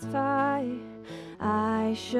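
A woman singing a slow worship song, accompanying herself on acoustic guitar. Two sung phrases, with a short break and an intake of breath about a second in.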